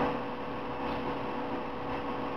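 Steady background hiss with a faint, even electrical hum; no distinct handling sounds stand out.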